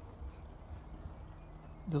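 Wind on the microphone: a steady, low rumbling noise.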